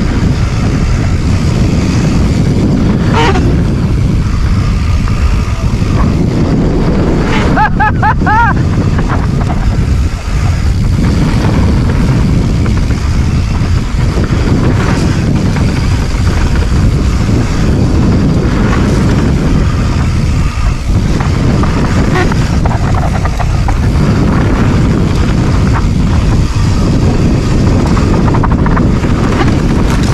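Wind buffeting the handlebar-mounted camera's microphone and tyre noise rolling over a dirt trail, a loud, steady rumble from a moving mountain bike. A brief high warbling sound about eight seconds in.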